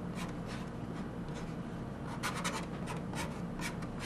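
Sharpie permanent marker writing letters on a plastic jug: short, irregular squeaky strokes of the felt tip on the plastic, with a quick cluster a little past the middle, over a steady low hum.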